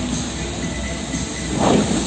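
Steady rushing and splashing of the Bellagio fountain's water jets, with a louder whoosh about a second and a half in as a long row of jets shoots up.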